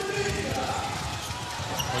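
Basketball being dribbled on a hardwood court, with arena crowd noise underneath.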